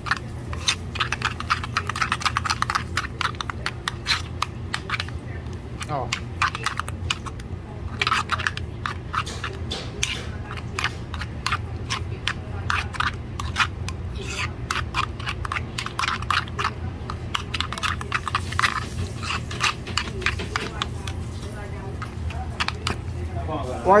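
A spoon scraping and clicking against the sides of a small bowl in quick, uneven strokes, stirring a thick sauce into a paste.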